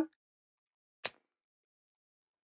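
A single short, sharp click about a second in.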